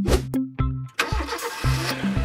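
Children's background music with a quick, steady beat. About a second in, a car engine-starting sound effect comes in and runs for about a second over the music.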